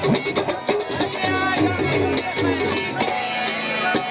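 Harmonium and tabla playing Punjabi folk music: sustained reed chords under a steady run of tabla strokes.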